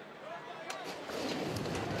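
Racehorses breaking from the starting gates: an even rush of hooves on turf that grows steadily louder through the second half.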